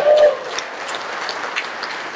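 Audience applauding and cheering in reply to a greeting from the stage.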